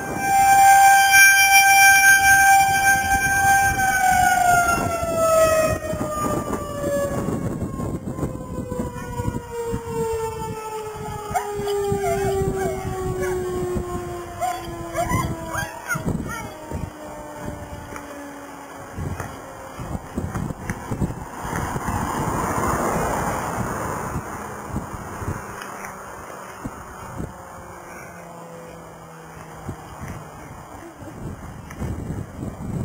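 Federal Signal 2001 electromechanical outdoor warning siren holding a steady wail for about four seconds, then winding down as it shuts off, its pitch sliding slowly lower for some fifteen seconds until it fades out. Gusty wind buffets the microphone throughout, with a stronger gust about two-thirds of the way in.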